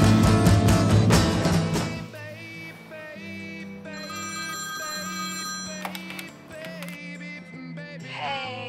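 A loud rock song with drums drops away about two seconds in, and a corded landline telephone rings for a couple of seconds over the quieter music that carries on.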